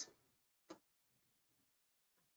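Near silence, with one short, faint click about two-thirds of a second in.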